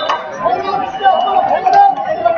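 Indistinct chatter of several voices talking over one another.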